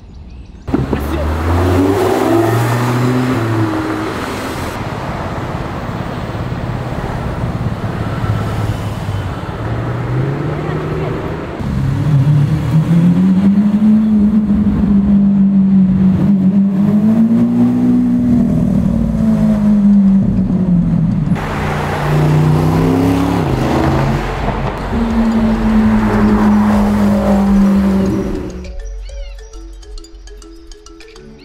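Lamborghini Aventador's V12 engine revving and pulling through traffic, its pitch climbing and falling again several times. The sound starts abruptly about a second in, breaks off sharply about two-thirds of the way through, resumes, and dies away near the end.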